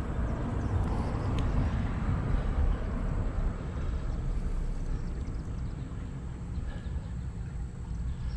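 Shallow creek water running over rocks, a steady wash with a low rumble underneath that eases slightly toward the end.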